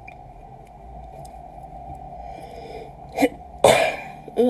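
A person sneezing: a short catch of breath about three seconds in, then one loud, sharp sneeze near the end.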